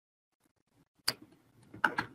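Two short, sharp clicks of a computer mouse, about three-quarters of a second apart: one about a second in and one near the end.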